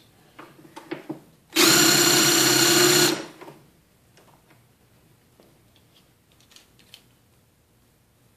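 Porter-Cable nut driver spinning a Lee Power Quick Trim cutter with downward pressure, trimming and chamfering a 300 Blackout brass case: a steady whine lasting about a second and a half, then winding down. Light clicks of handling come before and after.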